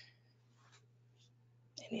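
A pause in a woman's talk: quiet room tone with a faint steady low hum and two faint brief noises, before her voice resumes near the end.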